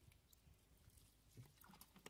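Near silence, with a few faint soft ticks, one about halfway through and several near the end.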